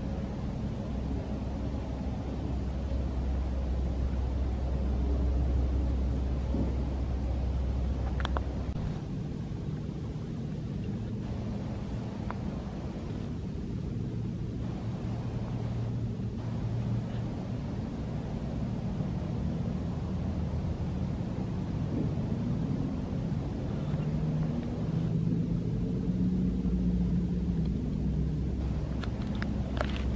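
Low, steady rumble of distant engines, their tones shifting in pitch now and then, with a faint click about eight seconds in.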